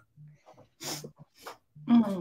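A woman sniffling and catching her breath as she holds back tears, with a few soft voice sounds between the breaths. She starts speaking again near the end.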